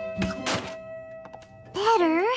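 A cartoon thunk as a flower pot is knocked off a small table and lands on the floor, over light background music with held notes. Near the end a louder wavering, sliding tone comes in.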